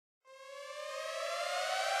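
A siren wail at the start of a hip-hop song. It begins about a quarter second in, rises slowly in pitch and grows steadily louder.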